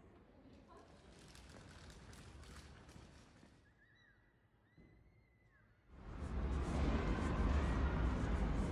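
Outdoor street ambience: a faint hiss at first, then, about six seconds in, a loud rushing noise with a deep rumble.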